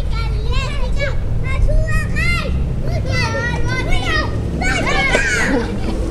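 Young children squealing and shrieking with excitement in high, rising and falling calls, repeated throughout, over a steady low rumble.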